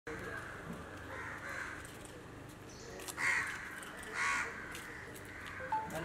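A crow cawing twice, about a second apart, over steady outdoor background noise.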